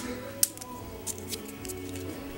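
Quiet background music with a sharp click about half a second in and a few lighter ticks from handling the trading cards and their packs.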